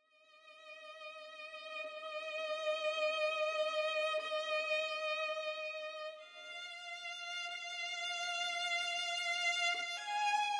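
Sampled solo violin from Spitfire Solo Strings' virtuoso legato patch playing a slow melody line with vibrato. It swells in from silence on one long note, then slurs up a step to a second held note about six seconds in.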